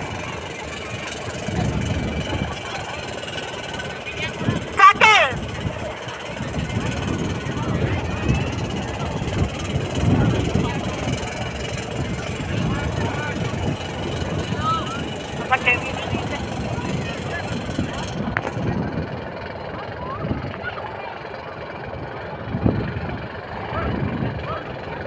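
Wind rumbling on the microphone over indistinct crowd voices out in the open, with a short wavering, pitched call or shout about five seconds in.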